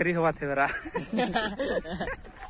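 People talking and laughing close by, over a steady, unbroken high-pitched insect drone.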